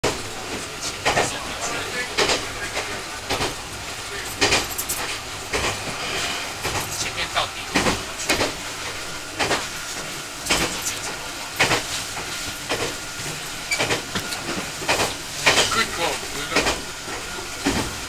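Nagano Electric Railway 1000 series Yukemuri express train running at speed, heard from its front observation seats: a steady running noise with sharp wheel clicks over the rail joints roughly once a second.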